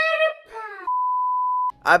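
A single steady, high-pitched electronic beep lasting a little under a second, the kind of bleep tone dropped in as an edited sound effect. It comes just after the drawn-out end of a man's spoken word.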